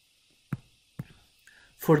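Two light taps of a stylus on a touchscreen, about half a second apart, as the dots of 'e.g.' are written, then a man starts to speak near the end.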